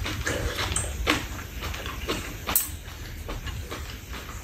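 Close-miked eating sounds: wet chewing and mouth smacks of someone eating marinated pork, with a few sharper clicks of metal chopsticks against the frying pan, over a low steady hum.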